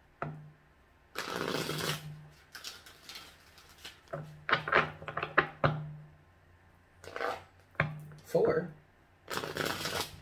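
A deck of tarot cards shuffled by hand in several separate bursts of cards sliding and slapping together, with short pauses between them.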